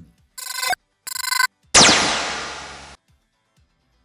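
An edited-in sound-effect sting: two short electronic ringtone-like tones, then a sudden loud crash that dies away over about a second and cuts off abruptly.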